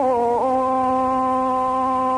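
A male Quran reciter's voice holding one long, steady note in melodic mujawwad recitation, the elongated vowel dipping briefly in pitch about half a second in and then held level.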